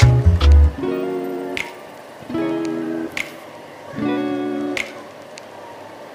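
Background music of strummed acoustic guitar chords, a new chord about every second and a half with a sharp click on the beat, quieter in the last second or so.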